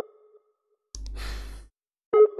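A sigh, a breathy exhale into the microphone, lasting under a second about a second in. At the start the last of a Skype outgoing-call ringing tone fades out; it comes round again just after.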